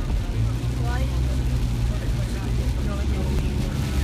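Steady low engine and road rumble heard from inside a moving vehicle on a wet road, with faint voices over it.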